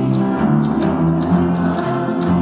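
A live amateur band playing a song together, instruments only at this point, with steady low bass notes under the melody.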